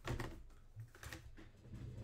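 A few light, irregular clicks and taps, the small sounds of something being handled or tapped.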